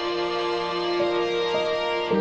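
Slow background music of long held notes, changing pitch about a second in and again about half a second later.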